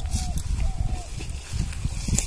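Rustling and a low rumble as hands move among pumpkin vine leaves, with two short, thin, slightly falling animal calls in the first second.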